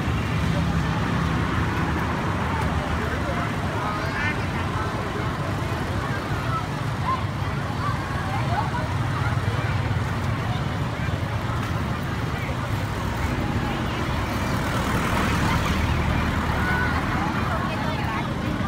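Busy street traffic, mostly motorbikes and cars running past, mixed with the chatter of a crowd of people, a steady din throughout.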